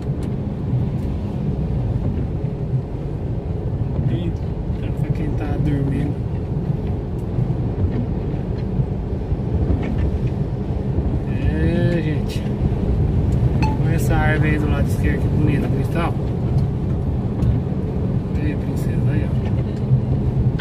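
Steady low drone of a truck's engine and tyres, heard from inside the cab while driving.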